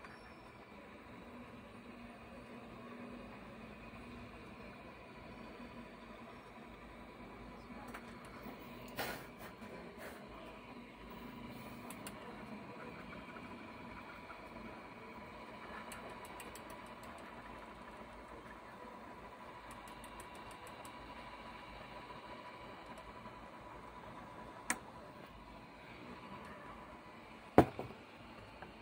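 Hot-air rework gun blowing steadily over a water-damaged graphics card board to dry it, a low hiss with a faint steady tone. A few sharp clicks, and one louder knock near the end as the card is handled.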